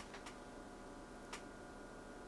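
Faint clicks from the oscilloscope's rotary adjustment knob being turned to step the generator frequency: a few quick ticks at the start and one more a little past halfway, over a faint steady hum.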